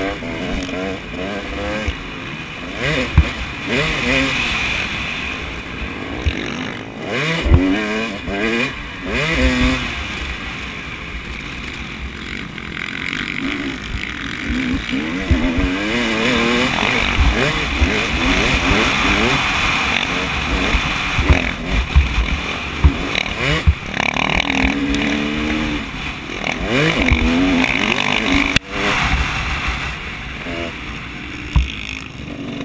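Motocross dirt bike engine revving hard, its pitch climbing again and again through the gears, over steady wind rush on a helmet-mounted camera, with a few sharp knocks.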